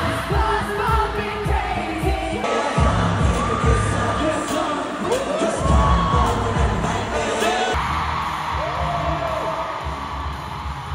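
Live K-pop concert sound in an arena, picked up on a phone's microphone: amplified singing over a heavy, pulsing bass beat, with the crowd cheering. The sound changes abruptly about two seconds in and again near eight seconds, where clips are cut together.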